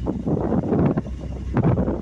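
Wind buffeting the microphone in two gusts, a long one and then a shorter one.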